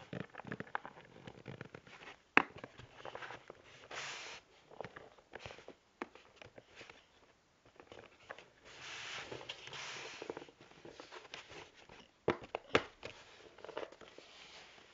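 Handling noises from hands working play-doh with a starfish cookie cutter: scattered sharp taps and knocks, one loud about two seconds in and two more near the end, with stretches of soft rustling and scraping in between.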